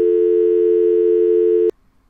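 Loud, steady electronic tone of two low notes sounding together, like a telephone dial tone, used as a 'technical difficulties, please stand by' signal. It cuts off with a click near the end.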